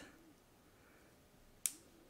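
Quiet room tone broken by one sharp, short click about one and a half seconds in, from hands handling craft materials.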